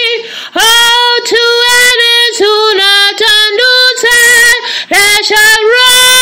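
A woman singing alone in a high voice with no instruments, in phrases of held notes with a slight waver and brief breaths between them.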